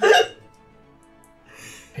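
A short, loud burst of laughter at the start, then a soft breathy laugh shortly before the end, over faint background music.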